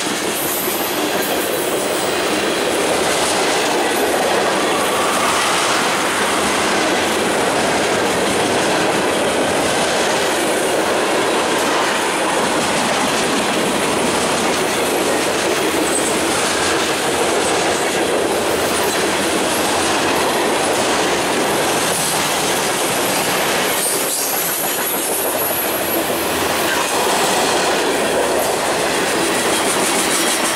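Freight train cars (tank cars and covered hoppers) rolling past close by: a loud, steady rush of steel wheels on rail with a regular clatter throughout.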